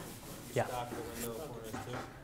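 A faint, distant person's voice speaking in a reverberant room, off the microphone, under a close rubbing noise.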